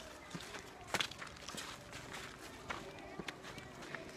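Quiet footsteps and scuffs of people walking on a dry dirt track, with scattered soft clicks and faint voices in the background.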